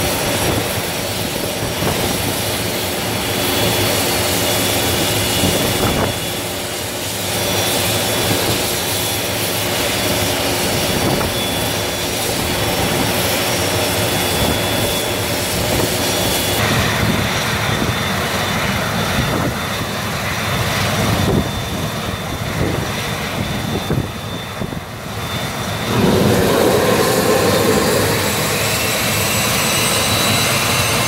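Twin turbofan engines of a Cessna Citation business jet running at idle, a steady whine with high-pitched tones. Near the end the engine sound grows louder as thrust is added to start the taxi.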